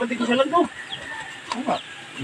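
Chickens clucking, with a person's voice mixed in; the calls are strongest in the first half-second and then drop to faint scattered clucks.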